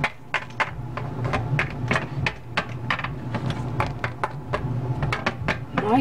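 Small plastic toy figures tapped down on a hard tabletop as they are hopped along: a run of light clicks, about four a second, over a steady low hum.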